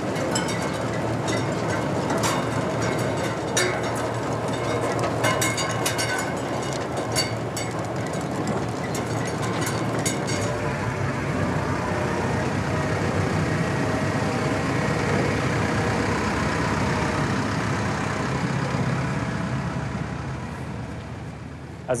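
Tractor engine running while a trailed potato digger works, with its rattling elevator and potatoes and clods clattering in many quick knocks. About ten seconds in the clatter stops, leaving the steady engine sound, which fades near the end.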